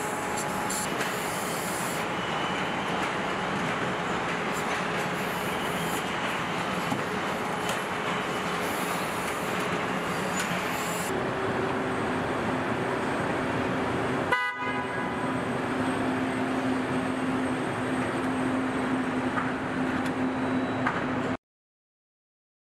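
Car assembly plant floor ambience: a steady wash of machinery noise with a constant hum, and a short pitched beep about two thirds of the way through. The sound cuts off abruptly just before the end.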